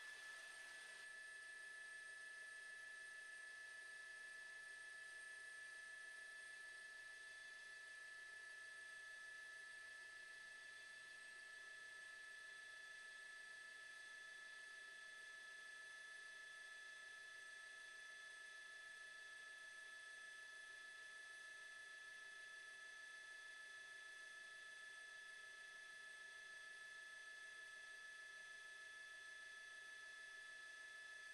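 Near silence: a faint, steady whine made of several held tones, unchanging throughout.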